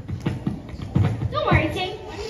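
Footsteps on a stage floor, several uneven low thumps, with children's voices mixed in.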